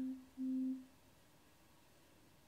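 A vibration motor buzzing twice, two steady low buzzes about half a second each with a short gap between.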